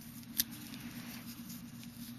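Faint handling of a small plastic MD80 mini camera and its clip in the fingers, with one light click about half a second in, over a steady low hum.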